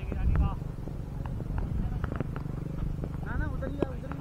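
Steady low rumble on a wearable camera's microphone, with faint clicks, under distant shouts from players out on the field, clearest near the end.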